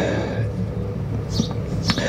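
A pause in a man's speech at a microphone. A steady low background hum runs through it, with short faint breaths or hisses about one and a half seconds in and near the end.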